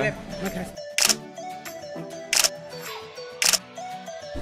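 Three camera-shutter clicks, short sharp snaps spaced about a second or so apart, over background music.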